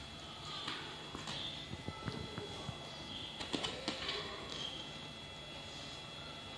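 An Alexandrine parakeet making several short, soft chirps, with a few sharp clicks a little past the middle.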